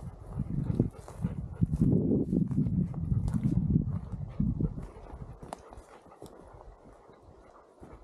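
Wind buffeting an uncovered microphone, a gusty low rumble that dies down after about five seconds, with scattered light clicks and knocks.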